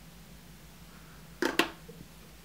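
Quiet room tone with a faint hum, then two quick sharp clicks close together about a second and a half in.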